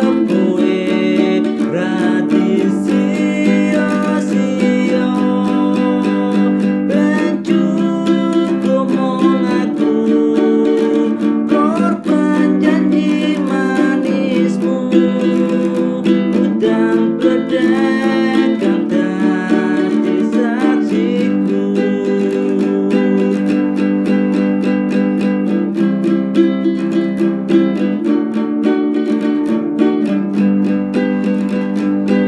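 A man singing a Javanese song, accompanying himself on a six-string gitar lele, a ukulele-sized guitar, with plucked chords that keep going under the voice.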